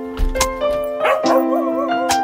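A dog whining and yipping, with a wavering whine about a second in, over background lofi piano music.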